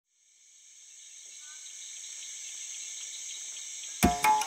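A chorus of insects chirring in several steady high-pitched bands, fading in from silence over the first couple of seconds.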